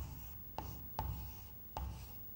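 Chalk writing on a chalkboard: short strokes with three sharp taps of the chalk against the board.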